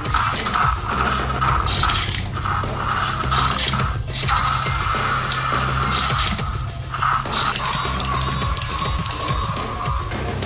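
Battery-powered toy dinosaurs' plastic gearboxes and motors whirring and clicking as they move, a steady whine that briefly cuts out a couple of times. Background music plays underneath.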